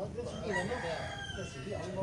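A faint, drawn-out call of a farm bird in the background, wavering in pitch and lasting over a second.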